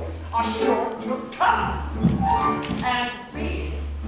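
An actor falling onto the wooden stage with a thud and a few knocks about two seconds in, amid stage voices and backing music.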